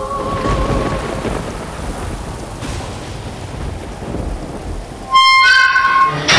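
Steady rain with a low rumble of thunder and a held musical tone fading out at the start. About five seconds in, a loud, sustained note from the music score cuts in sharply.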